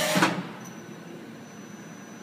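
Okuma & Howa Millac 438V CNC vertical machining center moving to its G30 tool-change position: a rush of machine noise dies away about half a second in. It leaves a steady low running hum with a faint thin high whine.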